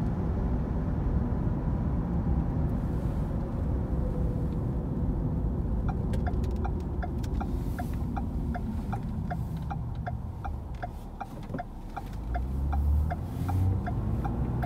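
Car interior road noise: a steady low rumble of tyres and engine while driving. About six seconds in, a regular ticking of about two to three ticks a second starts, typical of a turn-signal indicator, and the rumble dips briefly and swells again near the end as the car slows and pulls away.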